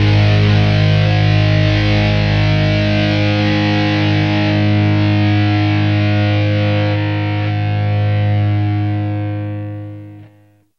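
Distorted electric guitar and band holding a final chord that rings on and fades out near the end, closing a rock theme track.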